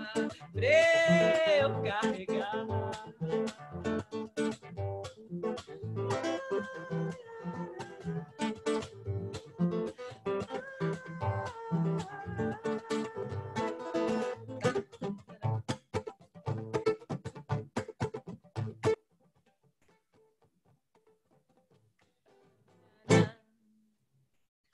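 Acoustic guitar plucked in a steady rhythm, with a sung note gliding upward about a second in; the guitar stops abruptly about three quarters of the way through, ending the song. Near silence follows, broken by one sharp knock near the end.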